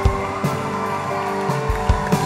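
Worship band music playing: held keyboard chords with a kick drum beating underneath.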